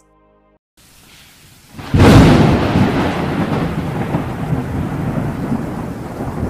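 Thunder-and-rain sound effect. A faint rumble is followed, about two seconds in, by a sudden loud crash that rolls on as a long, slowly fading rumble over a steady hiss.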